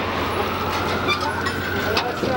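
Steady low rumble of a large passing vehicle, with a faint whine that rises slowly across it.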